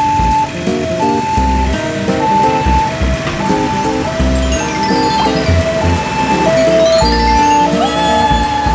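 Cheerful jingle-style music: a simple melody of held notes over a steady bass beat, with a sweeping glide partway through.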